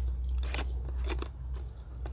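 Plastic Syrp Genie carriage mount being turned by hand to tighten it down on its bolt, giving a few crunching clicks about half a second apart.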